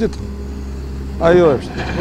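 A man speaking in short phrases, with a pause of about a second between them, over a steady low rumble.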